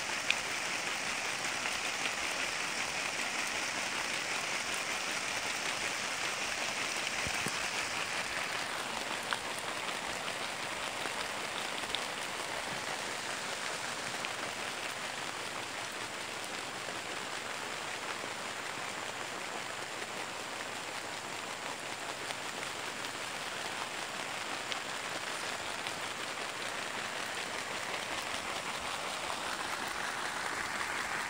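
Rotating overhead sprinklers spraying water over rows of chili plants: a steady hiss of spray and falling drops on the leaves and plastic mulch, with a few brief sharp ticks.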